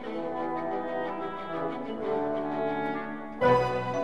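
Orchestral background music with sustained brass chords; a louder chord comes in sharply about three and a half seconds in.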